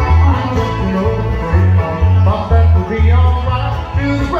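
Bluegrass band playing an instrumental break on fiddle, banjo, acoustic guitar and bass guitar. The bass keeps a steady, even pulse under the fiddle and banjo lines.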